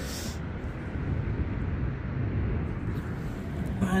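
Steady low outdoor background rumble, with a brief noise right at the start.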